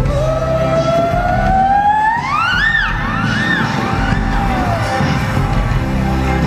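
Live band music with a steady low bass underneath. A lead melody line slides smoothly up in pitch over the first couple of seconds, then swoops up and down in three or four arcs before gliding back down near the end.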